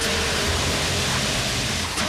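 Fire extinguisher discharging: a loud, steady hiss of spray that starts abruptly and holds without a break.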